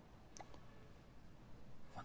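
Near silence: room tone, with one faint click a little under half a second in.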